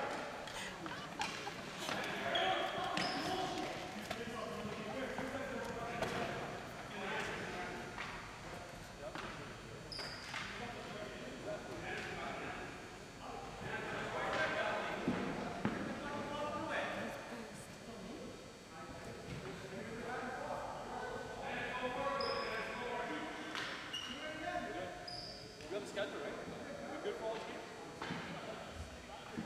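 Indistinct chatter from players, echoing in a gymnasium, with scattered knocks of sticks and a ball on the hardwood floor and a few short high squeaks.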